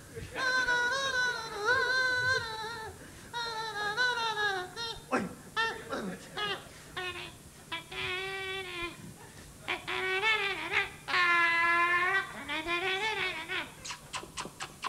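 A man's high, wavering voice into a microphone, standing in for an orchestra by imitating instruments: a string of pitched, bleating tones with vibrato, each held a second or two and gliding up and down.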